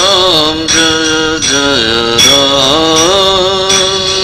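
A devotional chant sung in a single voice, holding each note and sliding between pitches, over musical accompaniment.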